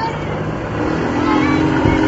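Street traffic: a steady rumble of passing cars, with a car engine's drone coming in about a second in.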